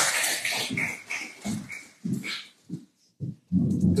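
Audience applause dying away over the first second or two, followed by a few scattered low thumps and bumps.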